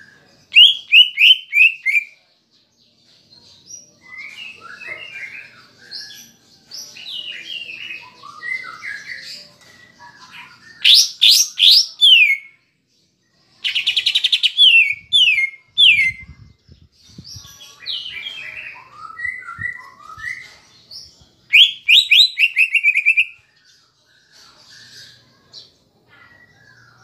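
Caged male greater green leafbird (cucak ijo) singing: loud volleys of rapid, falling whistled notes four times, with softer warbling phrases between, part of a repertoire said to include mimicked kapas tembak phrases. A few faint low knocks come near the middle.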